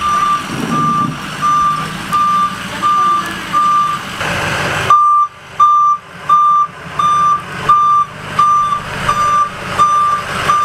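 A loaded dump truck's reversing alarm beeps steadily at one pitch, about three beeps every two seconds, as the truck backs up. The truck's engine rumbles low underneath, and there is a brief rush of noise a little before halfway.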